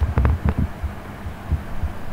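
Steady low electrical hum with a quick cluster of soft thumps and clicks in the first half-second and another thump about one and a half seconds in.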